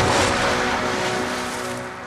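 Film sound effect of a loud rushing whoosh over a steady droning score, starting sharply and fading away toward the end.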